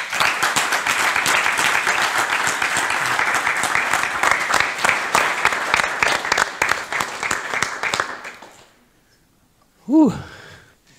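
Audience applauding: dense clapping for about eight seconds that then dies away.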